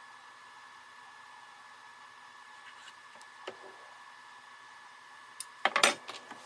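Quiet workshop room tone with a faint steady high whine, a light tap about three and a half seconds in, then a quick cluster of knocks and clatters near the end as wooden boards and tools are handled on a wooden workbench.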